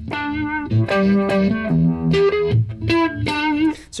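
Electric guitar played through a Univibe and an Octavia pedal, picking a bluesy E minor pentatonic phrase of single notes and double-stops that sounds the natural third, G sharp. Some held notes waver in pitch.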